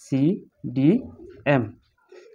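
A man's voice saying three slow, drawn-out single syllables, each gliding in pitch, spoken as the Roman numeral letters are written down.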